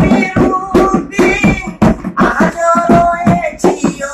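A man singing a melody while slapping a steady beat with his hands on a plastic cooler box used as a drum, about three hits a second.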